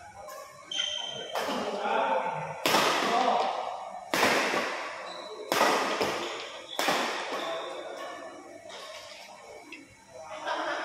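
Badminton rally: rackets hitting the shuttlecock in a large hall, with five loud, sharp hits roughly every second and a half, each echoing off the walls. Spectators' chatter runs underneath and is left alone after the hits stop near the end.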